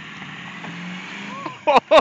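Ford Power Stroke V8 turbodiesel pickup engine revving under load as the truck pulls on a tow strap tied to a tree, its pitch rising a little. Near the end, two loud shouts of "whoa" cut in over it.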